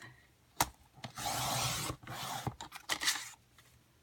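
Sliding paper trimmer cutting cardstock: a sharp click, then the cutter head scrapes along the rail through the sheet for just under a second, followed by a few lighter clicks and short scrapes.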